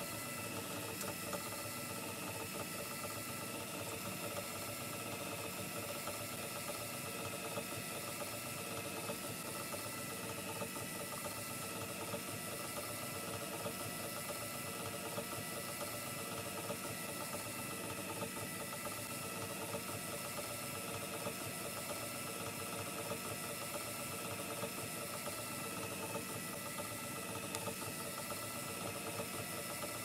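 Small electric motor and drill-chuck drive of a home-built electrified gramophone running steadily, spinning the turntable at about 78 rpm, with a steady hum of several tones.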